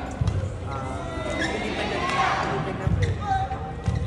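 Live badminton rally heard courtside in an arena: players' feet thudding and squeaking on the court mat, with sharp clicks of racket strikes on the shuttle. Spectators' voices run throughout.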